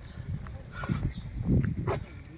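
Soft low thuds at about two a second, the footsteps of the person filming as he walks, picked up together with phone handling noise on the microphone.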